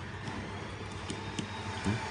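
A few faint clicks of a small precision screwdriver working the tiny screws of an iPhone 4's battery-connector bracket, over a steady low room hum.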